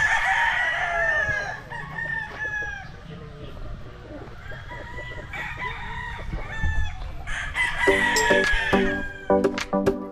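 Several gamecocks crowing, their calls overlapping and coming in waves. Background music comes in near the end.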